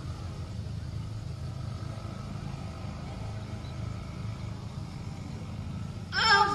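Steady low background hum and rumble with no voice, at a moderate, even level.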